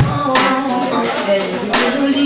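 Live soul-jazz band playing: a drum kit keeps time with regular cymbal strikes and bass drum under keyboard chords and held melodic notes.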